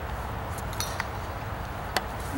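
Steady low outdoor rumble with a few short, sharp clicks, about four in two seconds, the last one near the end the loudest.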